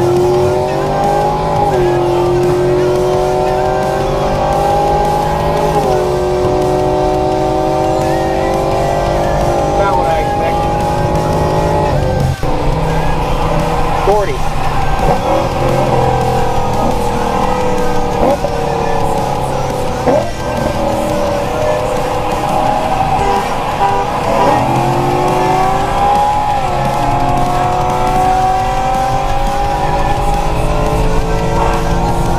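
Car engine accelerating hard through the gears as road speed climbs from about 30 mph towards 90 mph. Its pitch rises steadily and drops back at each upshift, several times over, over steady road and wind noise.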